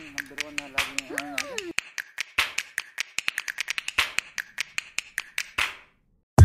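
A quick, uneven run of sharp clicks or snaps, about four to five a second, with a voice at a sliding pitch over the first couple of seconds. The clicks stop shortly before the end.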